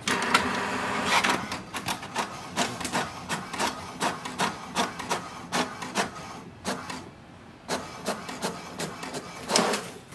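HP DeskJet 4252e inkjet printer printing a page. The paper feed starts with a whirr, then the print carriage makes short, evenly repeated strokes at about three a second. There is a brief lull near seven seconds and a louder burst just before the end.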